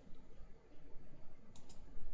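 A computer mouse clicking, a close pair of sharp clicks near the end, over faint room noise.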